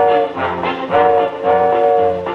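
Brass section of a swing-style jingle band playing a run of held chords, about three in two seconds, each ending cleanly before the next.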